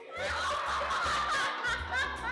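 Children laughing and shrieking as a raw egg breaks over a boy's head, over background music with a steady low beat.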